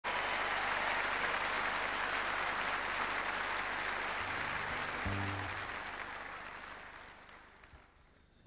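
Concert audience applauding, steady at first and then dying away over the last three seconds.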